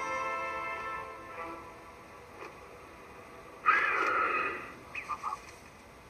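Film score with held, sustained notes fading out over the first second or two, followed by a sudden loud sound lasting about a second around two-thirds of the way through and a few short high squeaks just after it.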